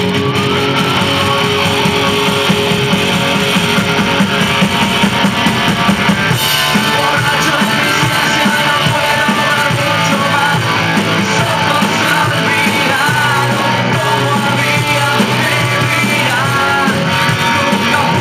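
Rock band playing live: electric guitars, bass guitar and a drum kit.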